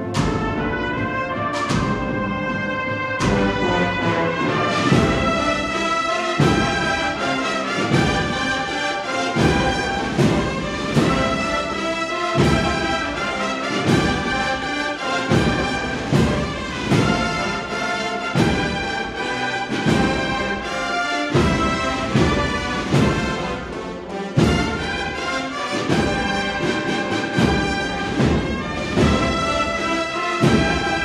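A Spanish agrupación musical, a large processional band of trumpets, trombones, tubas and drums, playing a Holy Week march: full brass over a steady drum beat.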